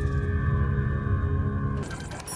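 Dramatic soundtrack music: a low, rumbling swell under a few held high tones, fading away near the end.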